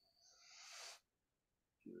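A person's breath close to a microphone on the call, a breathy rush that grows louder for about a second and then cuts off; a man starts speaking near the end.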